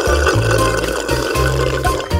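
A drink slurped through a straw, a gurgling, bubbling sound, over background music with a bass line.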